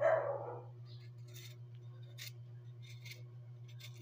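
Kitchen knife shaving the skin off a raw sweet potato: a few faint, short scraping strokes over a steady low hum.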